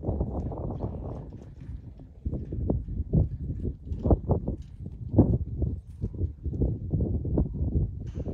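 Two large dogs play-fighting, with low growling and scuffling in rough, uneven pulses.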